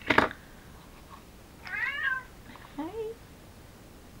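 A sharp click from the hand-held craft paper punch at the start, then a house cat meows twice, about two seconds in and again a second later, the second call shorter and rising.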